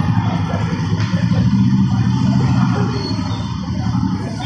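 Motorcycle and scooter engines running at idle close by, a steady low hum.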